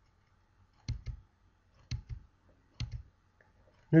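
Computer mouse button clicking three times about a second apart, each a sharp click followed closely by a softer second one.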